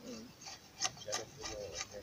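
Drawknife shaving a wooden stick clamped in a shaving horse: a few short scraping strokes of the blade along the wood.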